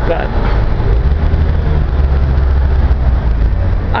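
City street traffic noise, with a motor vehicle's low engine rumble that swells about a second in and fades near the end.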